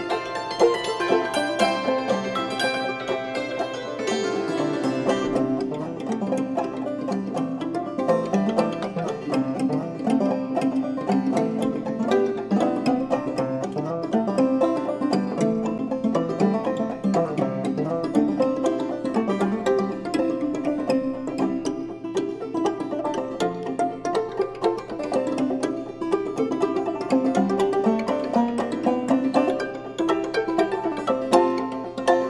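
Clawhammer banjo and hammered dulcimer playing an old-time tune in C together at a brisk, steady pace. The bright, high ringing thins out about four to five seconds in.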